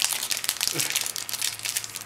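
Foil Yu-Gi-Oh booster pack wrapper crinkling as hands work it open, a quick run of sharp crackles.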